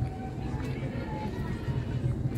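Steady low background rumble of outdoor ambience, with faint voices or thin tones far in the background.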